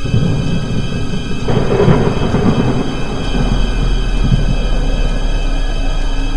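Thunder rumbling, a film sound effect: it swells about a second and a half in and rolls on for a few seconds before easing, over low background music.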